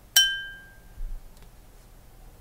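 A small bell struck once, with a clear ringing tone that fades within about half a second; it is the cue for the student to pause and answer the question. A soft knock follows about a second in.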